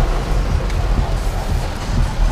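Heavy rain on a car's roof and windshield, with tyre and road noise through standing water, heard from inside the cabin as a steady, loud rush with a low rumble underneath.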